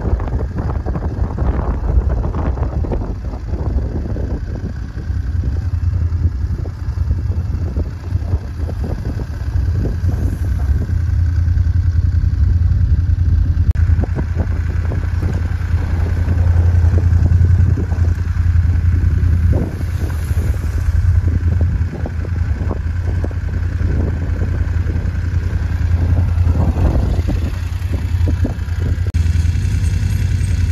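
BMW F 850 GS Adventure's parallel-twin engine running at low speed on a loose, rocky unpaved track, with an irregular clatter of stones and knocks over the engine's steady low hum.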